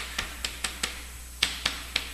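Chalk tapping and scraping on a blackboard while figures are written: a quick run of sharp ticks, about eight in two seconds, with a short pause about a second in.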